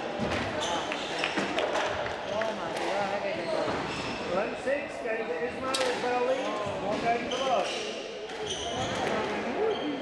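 Squash ball knocking sharply off rackets and the court walls in a large hall, over indistinct voices; the knocks are irregular, with the rally ending within the first few seconds.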